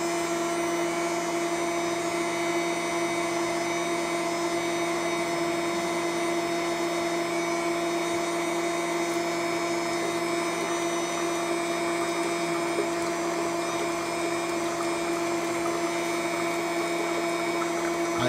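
Small reverse-osmosis machine processing maple sap: its electric pump hums steadily at one pitch over an even hiss, running under pressure as concentrate flows.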